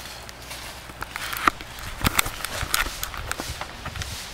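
Footsteps through dry brush, mixed with camera handling: irregular crunches and knocks that start about a second in.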